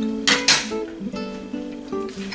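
Background music: an acoustic guitar strumming chords.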